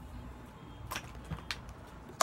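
Scissors snipping: two short, sharp clicks about a second in and half a second apart.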